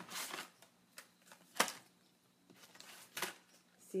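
Craft paper and product packaging being handled: a handful of short rustles and light taps, the sharpest about one and a half seconds in.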